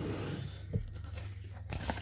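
Paper insert sheet being picked up and handled, a soft rustle of paper, with a light tap about a third of the way in and another near the end.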